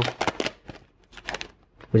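Trading cards and their foil pack wrapper being handled as cards are pulled from the pack. There are a few short clicks and rustles near the start and again a little past the middle, with quiet between.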